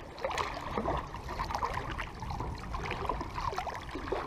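Small waves lapping against a rocky shoreline, with irregular little splashes and gurgles.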